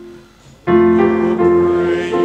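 Piano accompaniment of a hymn: a held chord fades out, a brief pause follows, then the next phrase begins with a new full chord about two-thirds of a second in.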